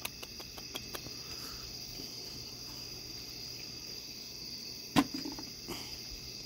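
Steady high chirping of crickets at night, with a few small clicks in the first second and one sharp knock about five seconds in.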